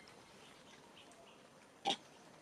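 A macaque gives a single short, sharp grunt or bark near the end.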